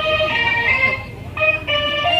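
Music played through a miniature sound-system speaker rig in a sound battle: a melody of held notes that change every fraction of a second, with a brief drop about a second in.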